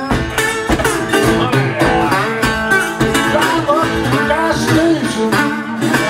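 Acoustic blues guitar played solo: a busy picked pattern with several notes that glide in pitch.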